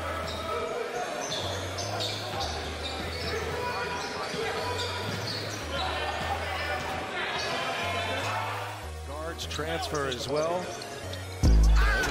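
An instrumental beat with a stepping bass line plays under basketball game audio from a gym: a ball dribbled on a hardwood court and crowd voices. A run of high sneaker squeaks comes about nine to eleven seconds in.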